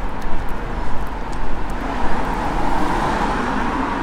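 Street traffic: a steady rumble with a motor vehicle's engine running close by, its hum growing stronger from about halfway through.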